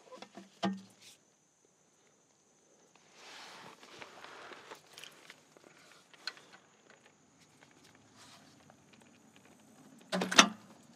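A few clicks of a socket ratchet on an oil pan drain plug in the first second, then faint rustling and light clicks as gloved fingers unscrew the plug by hand.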